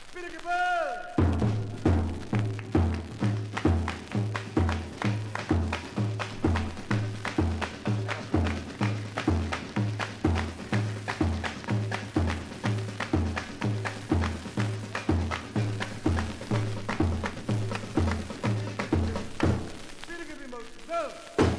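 Samba percussion from a 1962 vinyl LP: low drums keep a steady beat of about two strokes a second, alternating between two pitches, under sharp, quick percussion hits. It starts about a second in, after a short falling glide.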